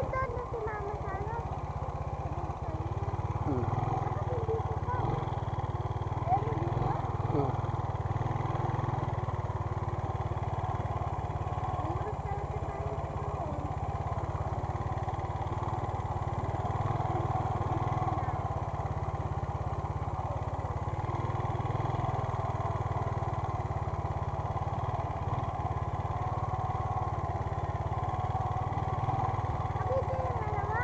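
Small dual-sport motorcycle engine running at a steady cruising speed while riding a rough dirt road, heard from the rider's position.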